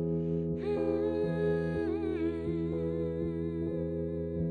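A woman humming a wordless melody with her lips closed, coming in about half a second in with held notes that slide and waver in pitch, over steady sustained keyboard chords.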